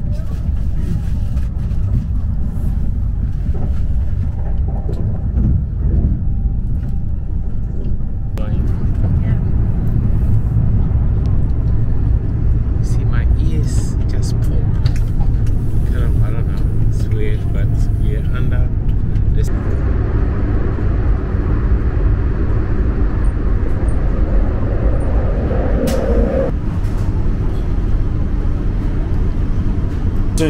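Steady low rumble of a Eurostar high-speed train running at speed, heard inside the passenger carriage, with faint voices in the background.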